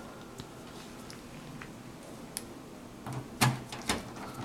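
A few faint ticks, then sharp metallic clicks and knocks in the last second as a screwdriver and screw are worked against the metal expansion-card bracket at the back of a desktop PC case.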